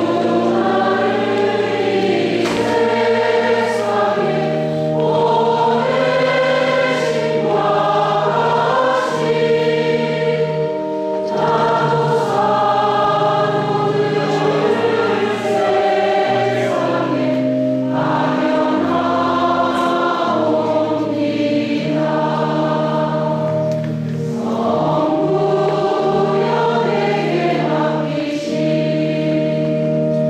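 A choir singing a hymn in phrases a few seconds long, with short breaths between them, over long held accompanying notes.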